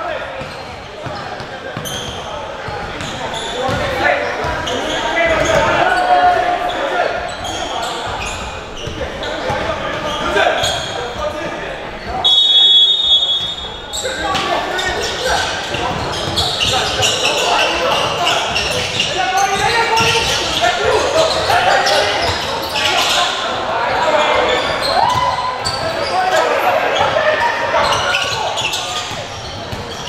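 Basketball game in an echoing gym: indistinct voices and crowd chatter over a basketball bouncing on the hardwood court, with a brief high-pitched squeal about twelve seconds in.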